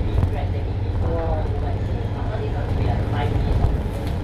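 Steady low rumble of a MAN A95 double-decker bus on the move, heard from inside on the upper deck, with people's voices talking over it now and then.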